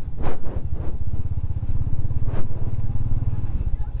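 Motorcycle engine running at low revs as the bike rolls slowly, a steady low beat of firing pulses.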